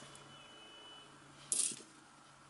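A short metallic clink of 20p coins knocking together as one is slid onto a small pile on a towel, about one and a half seconds in.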